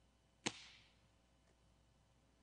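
A large communion wafer (priest's host) snapped in two: a single sharp crack about half a second in, with a brief fading tail. This is the breaking of the bread at the Eucharist.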